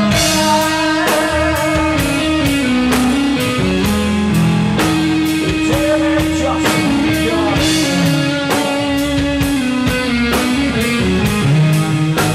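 Live rock band playing an instrumental passage: an electric guitar lead with long held, bending notes over bass guitar and a drum kit keeping a steady beat.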